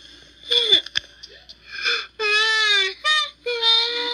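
High-pitched cartoon baby voices whimpering and crying: a few short falling cries, then long held wails, one in the middle and one from near the end.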